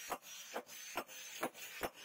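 Hand hammer forging a red-hot truck leaf-spring steel blank on a round steel anvil: five evenly paced blows, a little over two a second.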